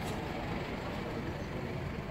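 Steady low background rumble, with no voices standing out.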